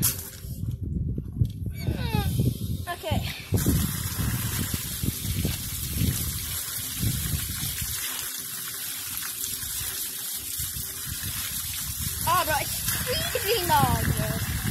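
Outdoor standpipe spigot opened: water pours out in a steady stream from about three and a half seconds in, splashing onto the ground. A voice is heard over the start and again near the end.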